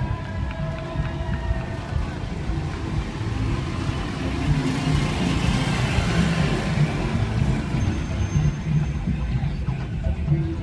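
Wind rumbling and buffeting on the microphone of a camera carried on a moving bicycle, with faint music underneath.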